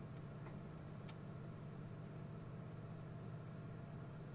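Steady low electrical hum with a faint hiss, and two faint clicks about half a second and a second in.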